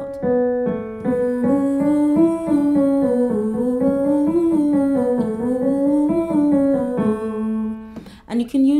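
Electric stage piano playing a slow, note-by-note vocal-exercise pattern that climbs and falls several times, with a sustained 'ooh' tone following the notes, fading out near the end.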